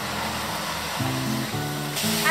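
Background music of sustained low chords, changing about a second in and again halfway through the second half, over a steady hiss.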